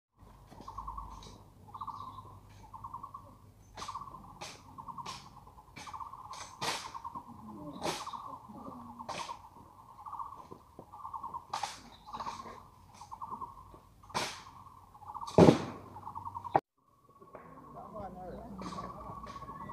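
Sharp clacks and knocks of an honor guard's rifle drill, the M1 Garand rifles being slapped, spun and grounded, with one heavy thud about fifteen seconds in. A bird trills over and over in the background, and the sound cuts off suddenly near the end.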